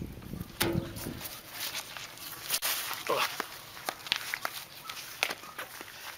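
A large, thin sheet of freshly baked lavash being peeled off a foil-wrapped hot grill lid and handled: scattered light crackles and rustles of the dry bread and foil, with some movement noise.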